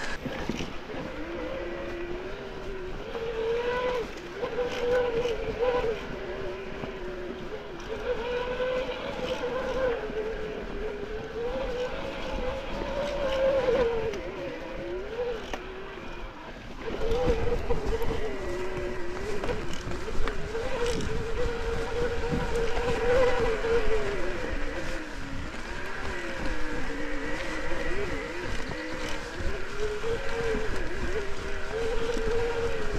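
Electric mountain bike's motor whining under pedal assist, its pitch wavering up and down with the pedalling. A rougher low rumble grows louder about seventeen seconds in.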